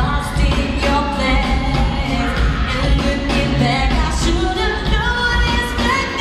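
Live pop music: a woman singing into a microphone over a loud band with heavy bass.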